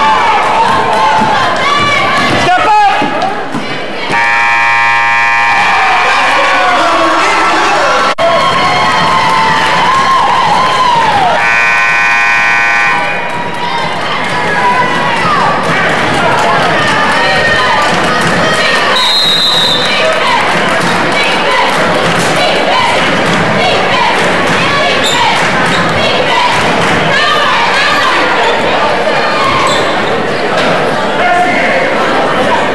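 Gymnasium scoreboard horn sounding twice, each blast lasting about a second and a half to two seconds, the first about four seconds in and the second about eleven and a half seconds in. Around it run the sounds of a basketball game: the ball bouncing on the hardwood and spectators' voices.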